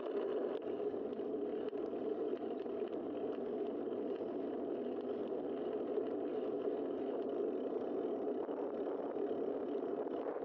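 Steady rushing noise of a bicycle in motion: wind over the bike-mounted camera and tyres rolling on asphalt, with a few faint clicks.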